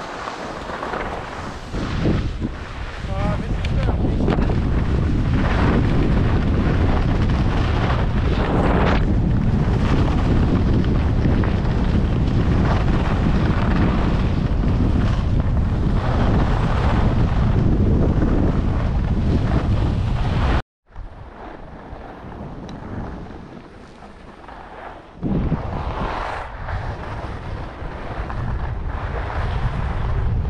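Wind rushing over an action camera's microphone as a skier descends a snow slope, with the hiss of skis on the snow. About two-thirds of the way through, the sound cuts off abruptly and returns quieter, then picks up again near the end.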